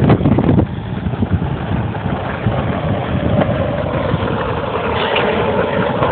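Skateboard wheels rolling down a rough asphalt road, a steady rumble, with a faint whine in the later seconds.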